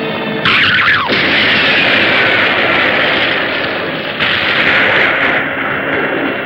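Monster-movie soundtrack: dramatic music under a sudden loud explosion about half a second in, with a high sound sweeping steeply down, and a second blast a little after four seconds, as fires rage through a model city.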